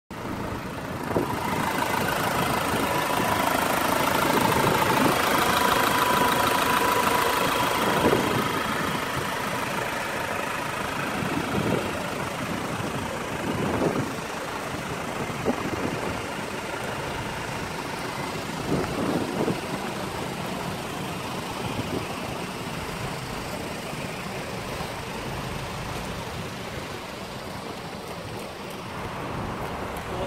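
IVECO Daily 35S21's 3.0-litre four-cylinder turbodiesel idling steadily, louder in the first several seconds, with a few short knocks along the way.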